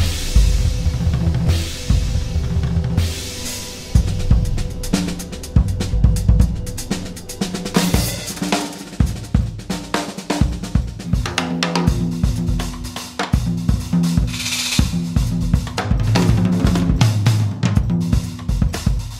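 Solo jazz drum kit played freely and busily, with snare, bass drum and tom strokes under hi-hat and ride cymbal work. A cymbal crash opens it, and a brief cymbal swell comes about fourteen seconds in.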